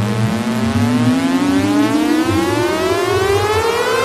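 Electronic dance-music build-up: a synth riser gliding steadily upward in pitch, siren-like, over a pulsing bass line.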